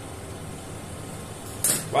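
Steady low background hum, with a brief hiss near the end.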